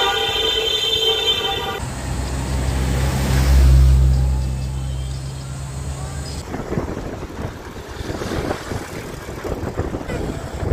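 A held vehicle horn sounds for a couple of seconds. A low vehicle engine rumble follows, swelling to its loudest and then stopping abruptly. The rest is wind buffeting the microphone. Each change is sudden, like a cut between clips.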